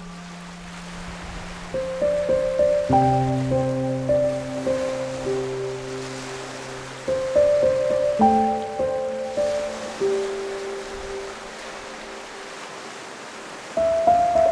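Slow, soft instrumental relaxation music, a gentle melody of held notes in two phrases, laid over the steady wash of small sea waves breaking on a sandy beach.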